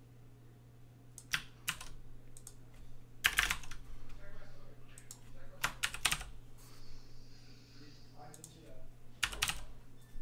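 Typing on a computer keyboard: irregular bursts of keystrokes with pauses between them.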